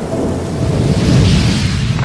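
Thunder-like rumble sound effect, deep and dense, swelling louder in the second half with a hiss like rain rising over it.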